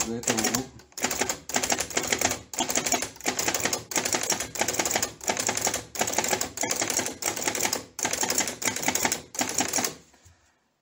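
Hammond No. 2 typewriter striking Z and V over and over, keys at opposite ends of its curved keyboard, in a steady run of about two strokes a second. Each stroke is a short cluster of mechanical clicks as the type shuttle swings to one extreme and the hammer strikes. This tests whether the shuttle rotates fully left and right.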